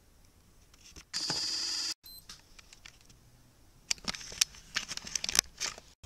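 An electronic beep or buzz lasting just under a second, cut off abruptly, followed by a run of sharp crackling clicks.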